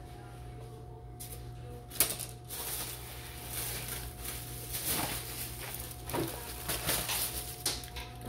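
A thin plastic grocery bag rustling and crinkling as it is handled, with a sharp click about two seconds in, over a steady low hum.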